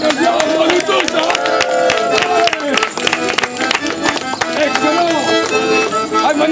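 Live medieval-style street music: a bowed, fiddle-like melody wavering up and down over frequent drum beats, with crowd voices underneath.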